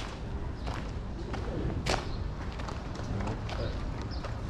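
Outdoor street background: a steady low rumble with faint voices, and a sharp knock at the start and another about two seconds in.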